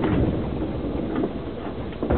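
Low, steady rumble of a JR 205-series commuter train car heard from inside, with a knock at the start.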